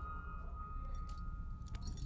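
Quiet background with a thin steady high tone and a low hum, and a few faint light clinks.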